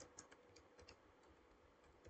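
Faint keystrokes on a computer keyboard: a handful of soft, irregular clicks as a short word is typed.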